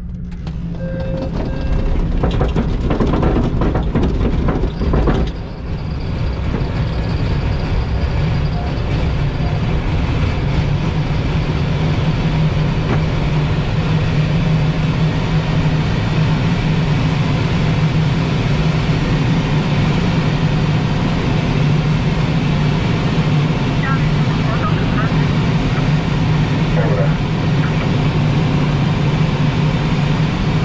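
L-13 Blaník glider on aerotow takeoff: a steady engine drone from the tow plane ahead over a loud rush of air and the rumble of the glider's wheel on grass, with irregular knocks and bumps in the first few seconds of the ground roll, then an even noise as it climbs away.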